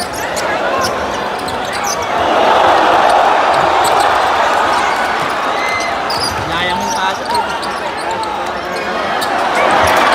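Arena crowd din of many spectator voices at a live basketball game, swelling a couple of seconds in. Over it are the sharp knocks of a basketball being dribbled on the hardwood court.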